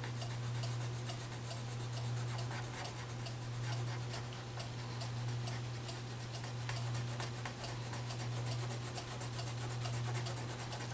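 Colored pencil shading back and forth on paper: quick scratchy strokes, about four or five a second, over a steady low hum.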